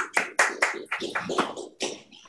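Applause from a small audience: distinct hand claps in quick, irregular succession, dying away near the end.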